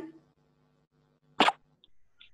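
A single short, sharp pop about one and a half seconds in, heard over a video-call connection, with faint low steady tones underneath.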